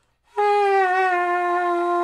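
Alto saxophone playing one long sustained note that sags lower in pitch about a second in, deliberately played lower than the reference note to show a sound that doesn't match.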